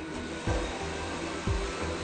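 Industrial sewing machine running with a steady whirring hiss as fabric is fed through. Background music plays over it, with a deep drum beat about once a second.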